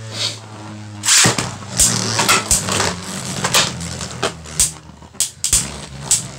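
Two Beyblade Burst tops, Cosmo Dragon and Bushin Ashura, spinning in a plastic stadium: a steady whirring hum broken by repeated sharp plastic clacks at irregular intervals as they strike each other and the stadium wall, the loudest about a second in.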